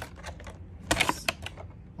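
Clear plastic packaging box being handled: a sharp plastic click at the start, then a quick cluster of clicks and crackles about a second in.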